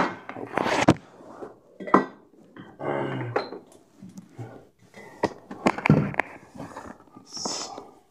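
Close handling noise of a phone and a comic book being moved about: irregular knocks, clicks and rustles, with a sharp knock about two seconds in.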